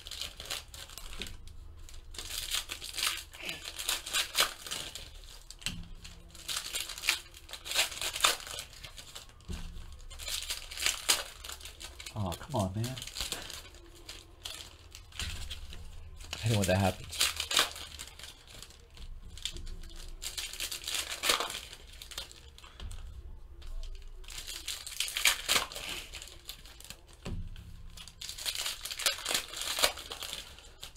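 Trading-card pack wrapper being torn open and crinkled by hand, with the cards inside shuffled and handled, in repeated bouts of crackling throughout.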